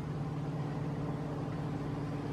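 A steady low machine hum, one low tone with a fainter one above it, over a faint even background hiss.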